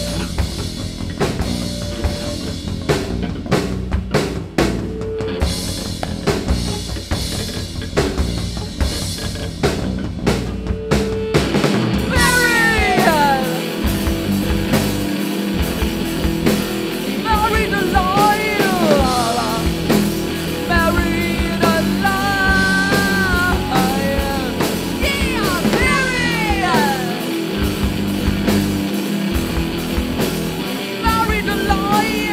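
Live rock band playing. The drum kit carries the first eleven seconds or so, then the full band with electric guitar, bass and singing comes in about twelve seconds in.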